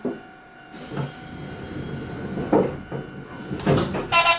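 Several dull knocks and thumps, about four spread over the few seconds, aboard an electric commuter train standing at a station platform, with a hiss coming in a little before the first second.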